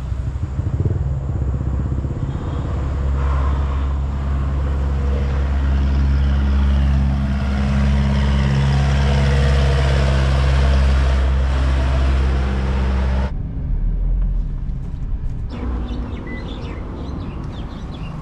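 Car engine and road noise heard while driving at a steady speed, a loud low steady hum. About thirteen seconds in it cuts off suddenly, giving way to quieter outdoor ambience.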